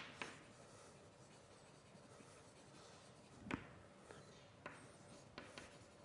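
Faint writing on a board: a few short, sharp taps of the writing tip against the board, the loudest about three and a half seconds in, with quieter ones near the end.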